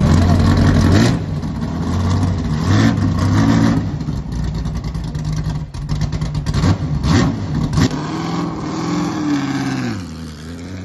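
Ford GT supercar's engine revving and driving off. Its pitch rises and falls several times, loudest in the first second, and drops away near the end.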